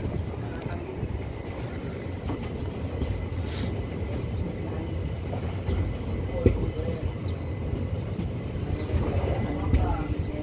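Passenger train rolling slowly into a station, heard from inside the coach: a steady low rumble of the wheels on the track, with a high thin squeal that comes and goes. A single sharp knock is heard about six and a half seconds in.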